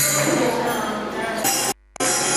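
Music with voices and jingling tambourine. It cuts to silence for a moment near the end, then resumes.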